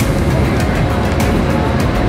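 Loud, steady low rumble and hiss of outdoor machinery noise, with background music playing over it.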